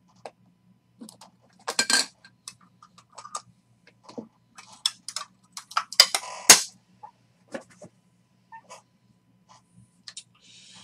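Clear plastic card holders clicking and clacking as trading cards are handled and set down, in scattered short taps. A louder rustling slide and knock come about six seconds in.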